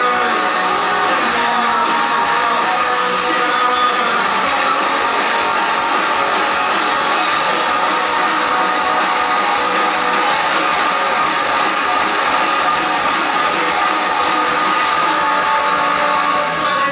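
A rock band playing live, with electric guitars, bass and drums in a loud instrumental stretch and no sung words.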